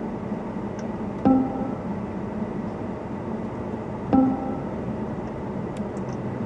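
Two short electronic confirmation beeps from the car's infotainment system as menu items are selected, about three seconds apart, each with a click at the onset, over a steady background hum.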